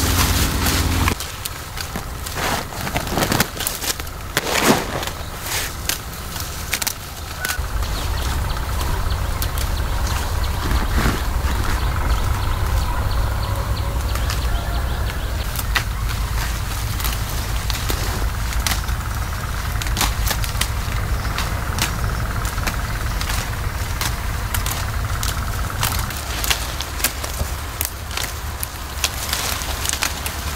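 Tea bushes being hand-picked: a scatter of sharp little snaps and clicks as the tender shoots are plucked, with leaves rustling, over a steady low rumble.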